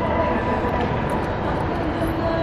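Steady low rumble of city street background noise, like distant traffic, with no distinct event standing out.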